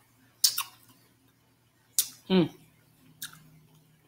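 Wet lip-smacking and mouth clicks from eating a sauced pork neck bone, three sharp smacks spaced a second or so apart, with a short voiced sound just after the second.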